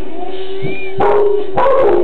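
Background music, then a dog barking loudly, starting about a second in and again just before the end.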